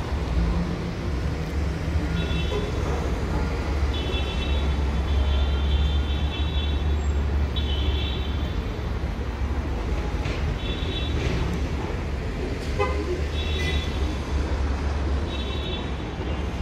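City street traffic noise with a steady low rumble. Short high-pitched tones come and go repeatedly over it.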